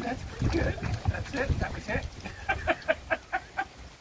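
Water sloshing as a puppy wades through shallow pool water. Then, past the middle, a quick run of about eight short, high-pitched vocal pulses.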